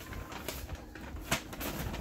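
Paper rustling and crinkling as items are handled and packed into paper gift bags, with a few sharp crackles.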